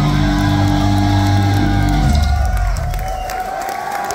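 A death metal band plays live with heavily distorted electric guitars and bass. The song ends on a final ringing chord that dies out about two and a half seconds in. The crowd then cheers and whoops.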